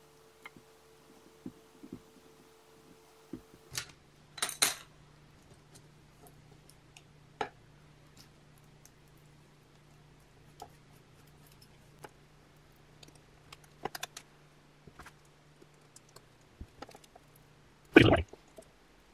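Scattered light clicks and taps of hands and tools handling glued rubber-magnet strips on a workbench, with a short clatter about four and a half seconds in and a sharper knock at the end.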